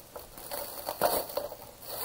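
Clear plastic wrapping being pulled and peeled off an RC buggy's body shell, crinkling, with a louder crackle about a second in.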